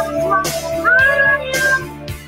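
A woman singing to her own strummed acoustic guitar; her voice slides up into a held note about a second in.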